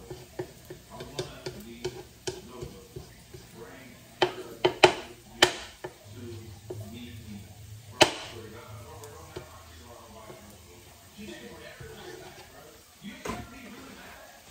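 Wooden spatula stirring sliced garlic in oil in a skillet, scraping and knocking against the pan, with a cluster of sharp knocks about four to five seconds in and a single one at about eight seconds, over a faint sizzle of the frying garlic. Near the end the spatula is laid down on the counter with a knock.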